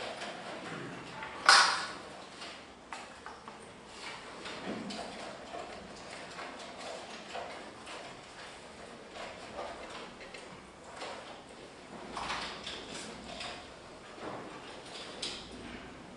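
Scattered footsteps, knocks and clicks of a person moving about a room, with a sharp loud knock about a second and a half in and a cluster of smaller ones near the end.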